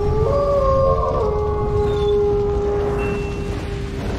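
Wolf howl sound effect: one long howl that rises in pitch at the start, then holds steady until near the end, over a deep rumble.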